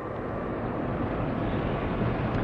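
Steady hiss and rumble with no distinct events: the background noise of an old recorded lecture-hall sermon during a pause in the talk.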